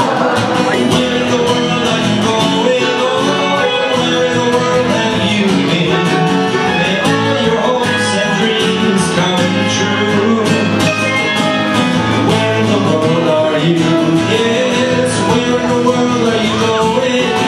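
Live acoustic band playing an instrumental break in a folk-country style, led by guitar and other plucked strings, at a steady, full level.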